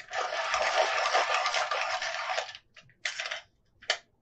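A Derwent coloured pencil being sharpened: a steady grinding scrape for about two and a half seconds, then a shorter second scrape and a small click near the end.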